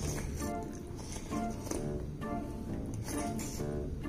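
Background music with short, repeated plucked-sounding notes over a steady bass line.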